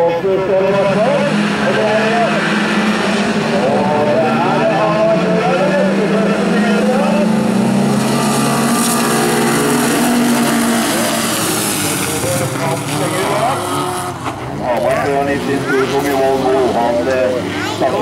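Several bilcross race cars' engines revving and accelerating hard together, pitches rising and falling, with a hiss of tyres and gravel in the middle. The engines drop away about fourteen seconds in, and a man's voice is heard over them at the start and near the end.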